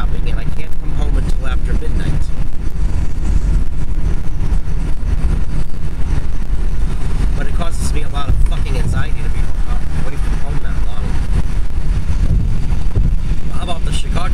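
Steady low road and engine rumble inside a car cabin at freeway speed.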